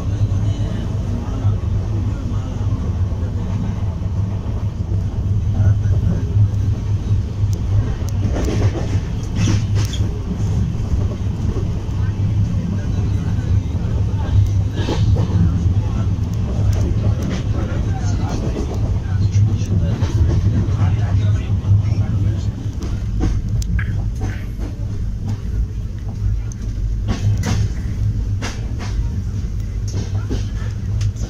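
Inside a Shatabdi Express coach running at speed: a steady low rumble from the wheels and carriage, with bursts of sharp clicks and rattles at times, typical of the wheels crossing rail joints and points while running through a station.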